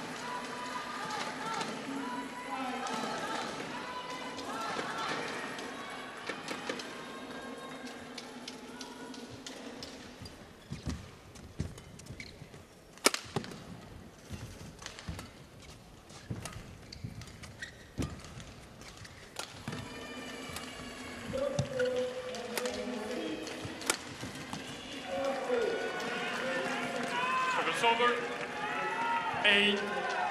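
Badminton rally: rackets striking the shuttlecock, a string of sharp cracks over several seconds in the middle. Arena crowd voices and shouts come before and after, rising near the end as the point is won.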